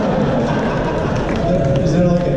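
Indistinct, echoing speech in a large hall, mixed with audience noise.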